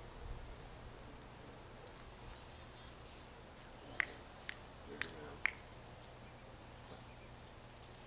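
Four sharp clicks about half a second apart, a few seconds in, over a faint low rumble.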